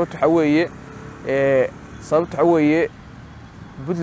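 A man speaking to camera in short phrases separated by brief pauses.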